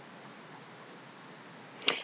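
Low, steady hiss of room tone, then one sharp click near the end.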